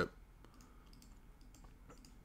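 A short pause in talk, close to room tone, with a few faint clicks.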